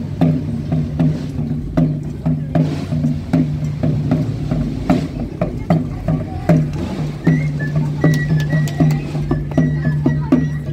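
Procession band music: drum strokes about two to three a second over a sustained low pitched line, with a thin high note joining in about seven seconds in.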